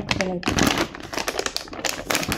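Thin plastic zip-closure bag holding cut tapioca pieces being handled, giving a quick, irregular run of crinkles and clicks.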